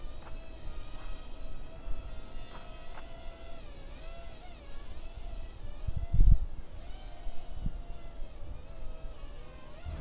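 JJRC H6C (Holy Stone F180) micro quadcopter's motors and propellers buzzing in flight: a high whine that wavers slightly in pitch as it holds a stable hover. A brief low thump comes about six seconds in.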